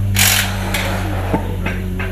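A short burst from a pneumatic impact wrench on a rally car's wheel nut, about a quarter second in, over a steady low hum, with a single knock later.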